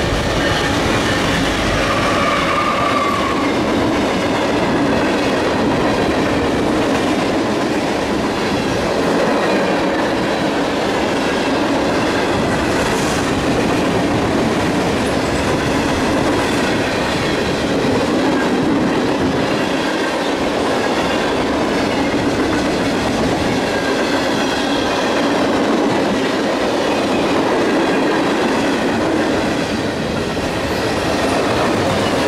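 Freight train passing close by at speed. In the first seconds the diesel locomotives rumble past, then comes a steady rolling rush of freight cars with wheels clattering over the rail joints.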